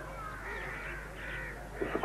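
Crows cawing faintly in the background, several harsh calls in quick succession, over a low steady hum.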